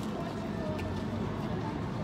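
Steady street background noise with faint distant voices.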